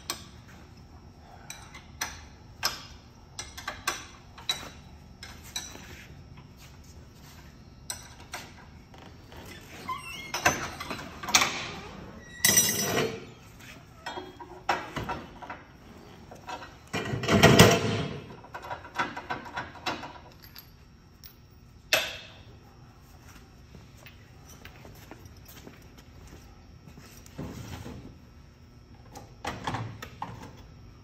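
Steel tooling being handled at the punch station of an Edwards 60-ton ironworker: a string of irregular metal clanks, knocks and wrench clicks as the punch and die are changed, the loudest clatter a little past the middle.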